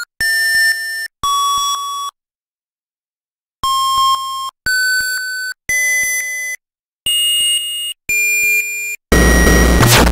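Electronic beeps in a breakcore track: seven single tones, each just under a second long and each at a different pitch, with short gaps and a pause of about a second and a half near the start. About nine seconds in, loud, dense breakcore with heavy bass comes in suddenly.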